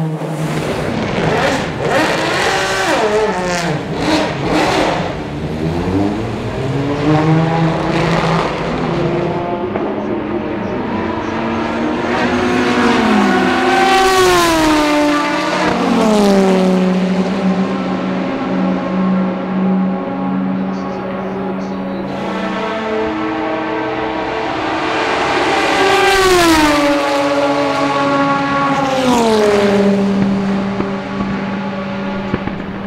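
Aston Martin DBR9 GT1's 6.0-litre V12 race engine. Through the first several seconds it revs up and down with gear changes. Then come two fast pass-bys about twelve seconds apart, each a high engine note that drops sharply in pitch as the car goes past, with a steadier, lower engine note held between them.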